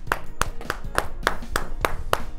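One person clapping hands in a steady run, about three claps a second, over background music.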